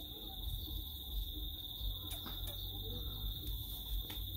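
A steady high-pitched whine over a low rumble on the microphone, with a couple of faint clicks about two seconds in.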